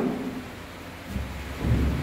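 Low muffled rumble starting about a second in, from a clip-on lapel microphone being brushed by the wearer's shirt as he moves.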